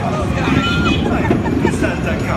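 Indistinct voices of riders on a spinning ride car, over a steady low rumble.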